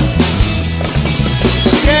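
Live brega band playing a short instrumental break between sung lines: drum kit strikes over bass, with the singer's voice coming back in at the very end.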